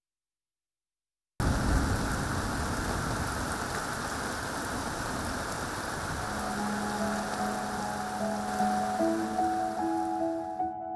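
Heavy rain pouring down, a steady hiss that starts suddenly about a second and a half in after silence. Soft background music with long held notes comes in over the rain about six seconds in.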